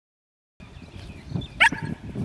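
A dog gives one short, high bark that rises in pitch about a second and a half in, over low thuds of running on grass. The sound cuts in only after about half a second of complete silence.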